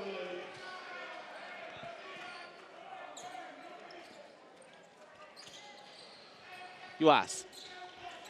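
A handball bouncing on the wooden sports-hall floor as players dribble and pass, over the murmur of the arena crowd. A commentator's voice cuts in loudly near the end.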